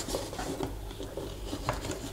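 Soft handling noises: a few light taps and some rubbing as the reflective sample is flipped over and repositioned by hand on the paper-covered test rig.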